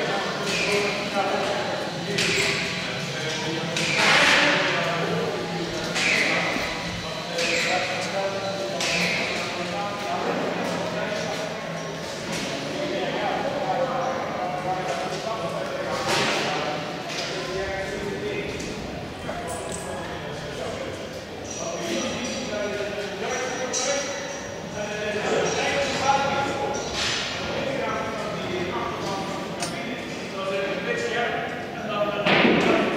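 Indistinct voices of several people talking in a large indoor hall, none of them close or clear.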